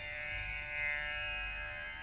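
Soft Carnatic background music in raga Amritavarshini: a layer of long, steady held tones like a drone.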